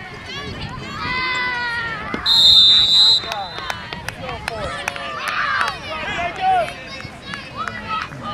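A referee's whistle blows one long, shrill blast about two seconds in, stopping play, amid shouting and cheering from spectators and children.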